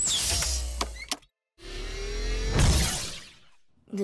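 Cartoon sound effects of a machine moving: two mechanical whirring, creaking motions. The first starts suddenly with a click and runs about a second; the second swells and fades over about two seconds.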